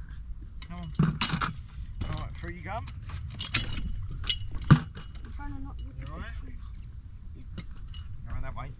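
Wind rumbling on the microphone, with a few sharp clinks and knocks, the loudest just under five seconds in, as people go through a wooden gate carrying a plastic bucket and nets.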